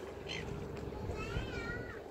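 Gulls calling: a short falling call, then a longer wavering call in the second half, over the steady hum of a boat's engine.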